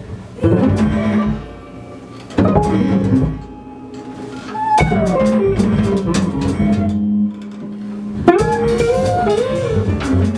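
Live small jazz ensemble playing: electric guitar chords struck every two seconds or so and left to ring, over bass and drum kit, with a wavering melody line coming in near the end.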